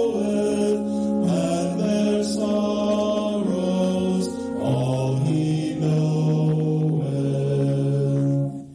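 Small mixed choir of men's and women's voices singing in harmony, holding long notes that change pitch every second or so.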